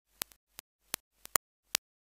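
Irregular sharp clicks, about seven in two seconds, with dead silence between them.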